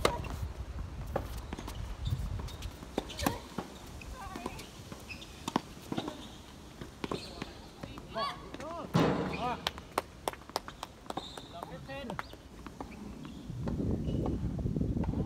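Tennis ball struck by rackets and bouncing on a hard court, sharp knocks scattered through. A quick run of short squeaks about eight to nine seconds in, and another near eleven seconds.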